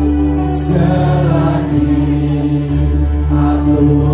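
A congregation singing a slow worship hymn, led by a singer on a microphone, over an accompaniment of long held bass notes that change every second or so.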